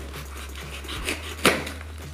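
Serrated folding knife slicing packing tape on a cardboard box: quiet scraping and small clicks, with one sharp crack about a second and a half in.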